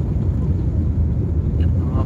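Airliner cabin noise in flight: a steady low rumble of engines and rushing air, heard from a passenger seat inside the cabin.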